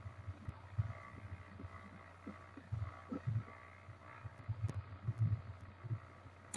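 Faint background noise from an open video-call microphone, with soft low bumps scattered through it.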